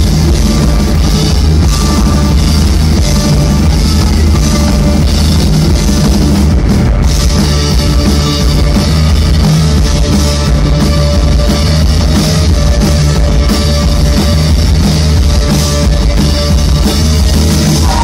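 Live rock band playing loud: electric guitar, electric bass and drum kit in a driving instrumental passage without vocals.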